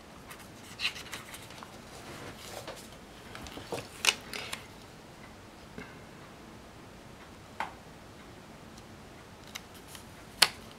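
Hands handling a paper sticker and pressing it onto a planner page: sparse light clicks and soft paper rustling, the sharpest click about four seconds in.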